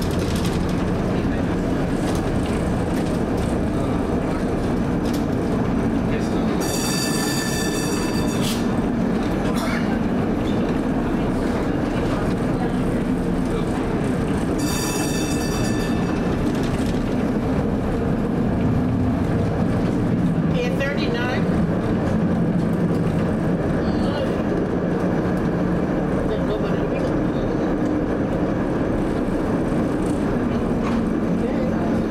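1947 PCC streetcar running along its tracks, heard from the cab: a steady rumble of the traction motors and the wheels on the rails. Two high ringing tones of about two seconds each stand out, about a quarter and about half of the way through.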